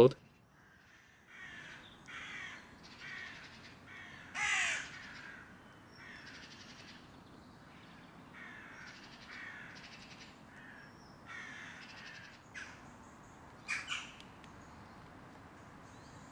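A crow cawing over and over, a string of separate calls about one or two a second, the loudest about four and a half seconds in.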